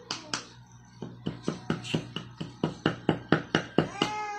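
Small wooden toy mallet tapping rapidly at a dig-kit excavation block: a couple of light taps, then a steady run of about four or five sharp knocks a second that grow louder toward the end.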